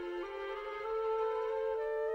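Instrumental score music: a slow melody of long held notes that change pitch in steps.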